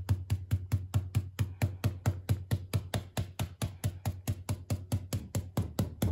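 A round stencil brush pounced repeatedly onto a 10 mil mylar stencil laid over a fabric pillow case, dry-brushing paint through it: a steady, fast rhythm of soft dabbing taps, about six a second.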